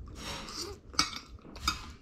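Eating noodles with a fork: a slurp in the first half, then the fork clinks twice against a ceramic plate.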